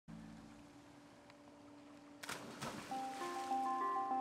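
Background music: a soft held low tone, broken about two seconds in by a short rushing whoosh, then bright mallet-percussion notes like a marimba begin picking out a melody near the end.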